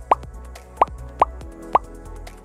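Four short rising 'bloop' pop sound effects, one for each line of on-screen text as it appears, over quiet background music.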